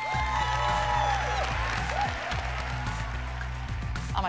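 Audience applauding and cheering, with high whoops, over background music.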